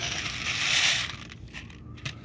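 A thin disposable plastic plate of dry cat kibble being gripped and shifted by hand, giving a scraping, crinkling crackle that swells for about a second and then fades.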